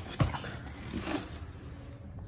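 Red cabbage lifted out of a cardboard vegetable box: one sharp knock just after the start, then faint handling noise.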